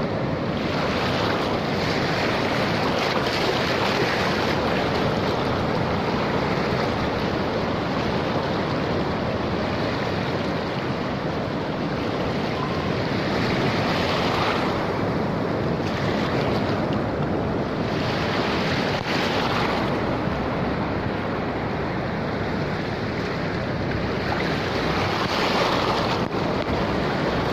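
Ocean surf washing over a rocky shore close by, a continuous rush of water that swells louder every few seconds as each wave runs in.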